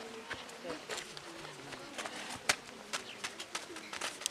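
Boys' voices in the background with a bird cooing, and a few sharp knocks of a football being kicked on a dirt road. The loudest knock comes about two and a half seconds in.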